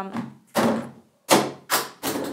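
A plastic toner bottle knocked over, falling and landing with several thuds and clatters in quick succession without breaking.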